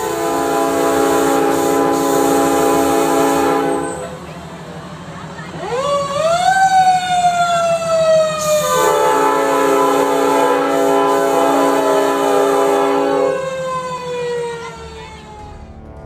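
Fire engine air horns sounding in a steady held chord for about four seconds. A siren then winds up sharply and slowly winds down, with the air horns sounding again for about four seconds over it as the siren fades.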